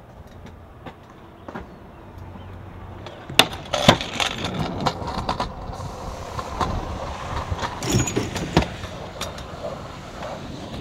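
Trick scooter wheels rolling on concrete, with several sharp clacks of the scooter striking the ground: two loud ones about three and a half to four seconds in and two more about eight seconds in.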